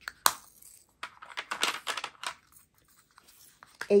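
Small plastic diamond-painting drill containers handled: a sharp snap, like a lid closing, then about a second of light plastic clicking and rattling, fading to a few scattered clicks.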